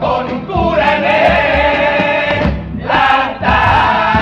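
All-male carnival comparsa chorus singing in harmony with guitar accompaniment and a steady beat underneath. The singing breaks briefly a little under three seconds in and picks up again at the next phrase.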